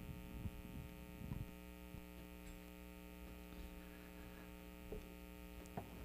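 Faint, steady electrical mains hum from the sound system, made of several steady tones, with a few faint knocks.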